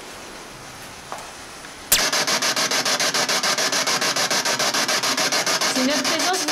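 Ghost-hunting spirit box sweeping through radio stations: loud radio static cuts in suddenly about two seconds in, chopped at an even rate several times a second.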